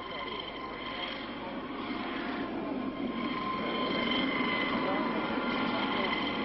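Aérospatiale Dauphin helicopter in flight, a steady turbine whine over rotor and engine noise that grows gradually louder.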